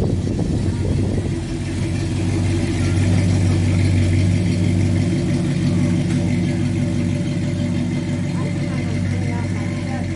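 Vintage Ford pickup truck's engine running at a low, steady note as the truck drives slowly past, growing louder about halfway through and then easing off as it moves away.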